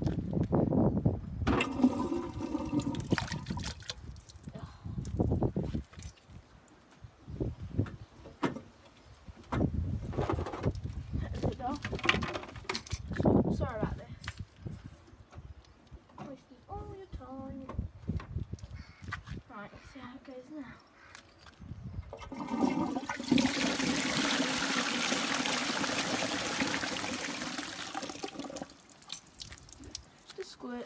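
Knocking and clattering of handling for the first half, then a toilet flush: a steady rush of water through the pan for about six seconds near the end, cutting off fairly sharply.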